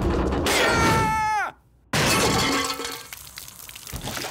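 Cartoon sound effects: a falling, pitched whine that drops away, a short silence, then a sudden loud crash of glass bottles shattering and crates tumbling, dying away over about a second.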